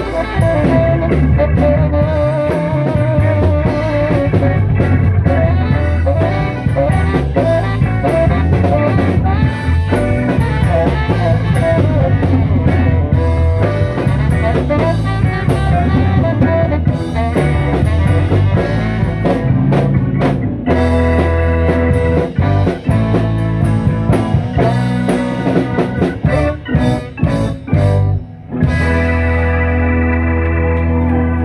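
Live blues-rock band playing: Fender electric guitar, bass, saxophone and drum kit. Near the end the band plays a run of short stop-stabs, then holds a sustained chord.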